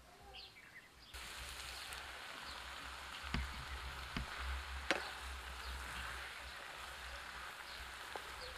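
Spinach leaves and chopped vegetables sizzling in a frying pan over a wood fire, a steady hiss that starts suddenly about a second in. A few sharp knocks of a wooden spatula against the pan punctuate it, the loudest near the middle; faint bird chirps come before the sizzling.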